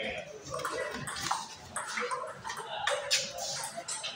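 Table tennis rally: the celluloid ball clicks sharply against paddles and the table, several times, with short calls in the background.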